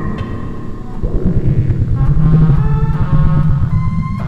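Live electronic music played on hardware synthesizers and an Elektron Octatrack sampler: a fast pulsing synth bass with higher synth tones gliding in pitch over it. The bass thins out briefly in the first second and swells back about a second in.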